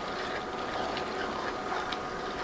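Wooden spoon stirring a simmering pasta and ground-beef mixture in a nonstick skillet on an induction cooktop, over a steady background noise, with a faint tick of the spoon against the pan near the end.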